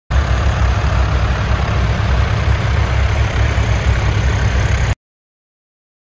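An M1161 Growler's engine running steadily with a low, throbbing rumble. It cuts off suddenly about five seconds in.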